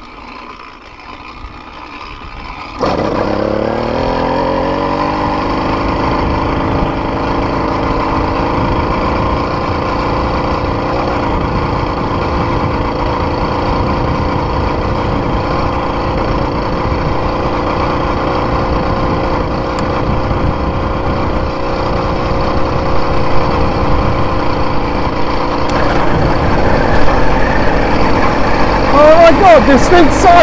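80cc two-stroke motorized-bicycle kit engine catching about three seconds in, its pitch rising as the bike picks up speed, then running steadily at speed and growing louder near the end.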